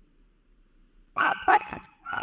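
A dog barking twice in quick succession, loud and sudden, starting about a second in.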